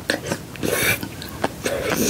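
Close-miked slurping of spicy ramen noodles, in two short swells, with wet mouth clicks and chewing.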